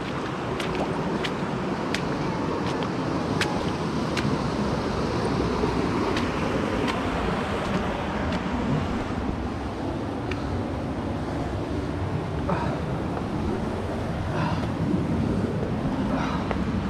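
Steady rush of a shallow creek running over sandstone, heard while wading through it, with a few sharp clicks in the first four seconds.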